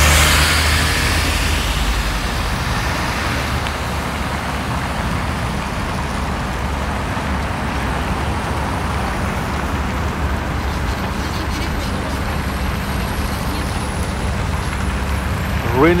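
A city bus passing close by at the start, the loudest moment, its noise fading into steady road traffic noise from cars crossing the junction.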